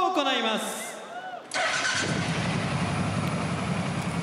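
A commentator laughs, then about a second and a half in a wrestler's entrance theme starts suddenly over the arena sound system, opening with a steady engine-like rumble.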